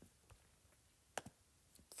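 Near silence, with one sharp tap on a tablet touchscreen about a second in and a fainter click just before the end.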